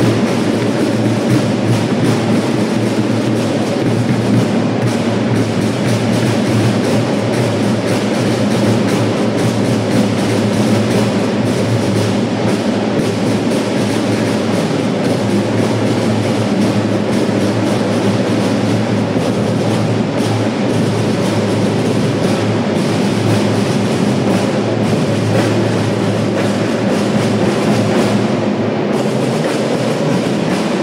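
A children's marching band playing: drums and percussion over music, loud and continuous.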